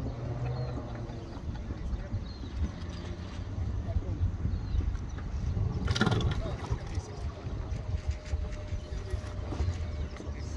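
Wind buffeting the microphone in an uneven low rumble, with faint voices in the background and a single sharp knock about six seconds in.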